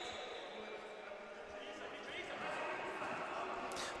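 Faint sports-hall ambience with distant players' voices and calls on a futsal court.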